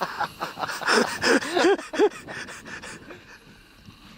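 Laughter: a run of short, breathy bursts about a second in, dying away by the middle.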